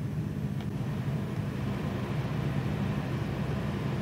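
An engine of construction machinery running steadily at a constant speed, an even low hum.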